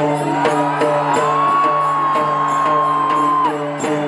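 Traditional Newar festival music: drums and cymbals beating about three to four times a second over a steady drone and a repeating tune. A long high held cry rises over the music shortly after the start and lasts about three seconds.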